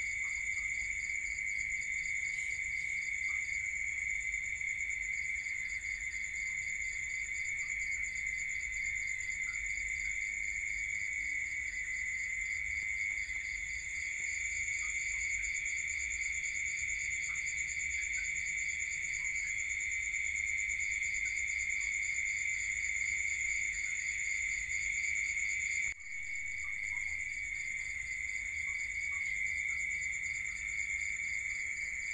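Steady insect chorus: several continuous high-pitched trills layered together, one of them pulsing rapidly and stopping and starting. The chorus drops out for a moment a few seconds before the end.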